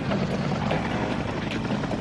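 Military helicopter flying past, its rotor and engines making a steady drone.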